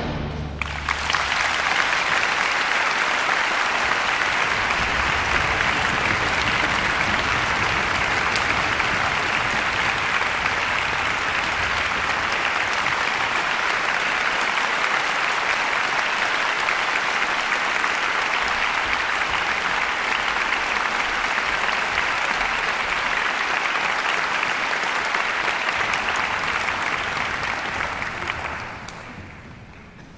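Audience applause after an orchestral performance, starting as the final chord rings off in the first second, holding steady, then dying away near the end.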